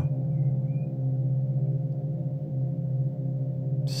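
Background meditation music: a sustained low, gong-like drone with a thin steady higher tone above it, holding level throughout.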